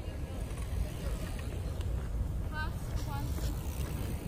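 Outdoor park ambience recorded while walking: a steady low rumble of wind and handling on a phone microphone, with two short, high, distant calls past the middle.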